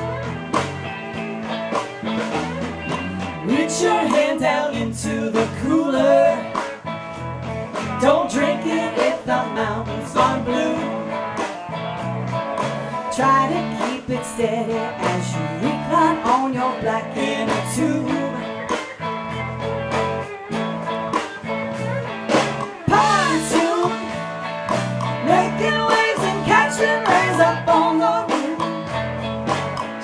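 Live country-rock band playing through a PA: electric guitars over bass guitar and a drum kit keeping a steady beat.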